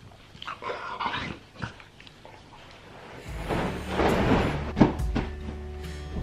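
A golden retriever lying on its back makes small throaty noises in the first two seconds. About three seconds in, background music comes in, with a louder rustling noise over it for a couple of seconds.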